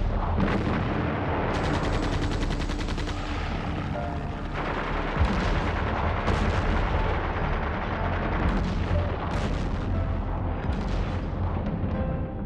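Battle sound of continuous gunfire and artillery shots, with a fast run of rapid shots like machine-gun fire about a second and a half in, and heavier single gun blasts through the rest.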